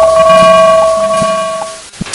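A held electronic two-note tone, synthesized in Audacity, over a faint low hum; it stays level for about a second, then dies away near the end.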